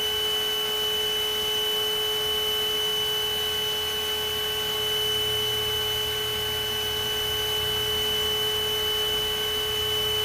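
A steady hum made of unwavering tones, one in the middle range and a stronger high one, unchanged throughout.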